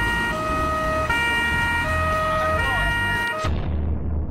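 Two-tone police siren alternating between a high and a low note about every three-quarters of a second, over a low rumble. It cuts off suddenly about three and a half seconds in.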